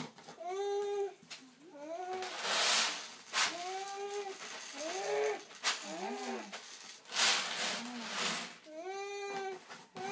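Dry cat food rattling out of an upturned plastic jug into a bowl, in two bursts about two and seven seconds in. Repeated short rising-and-falling vocal calls sound throughout.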